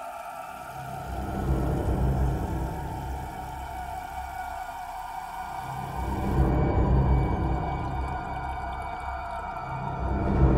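Dark ambient horror soundtrack: a sustained eerie drone of steady high tones, with a deep rumbling swell that builds about a second in and another around six seconds.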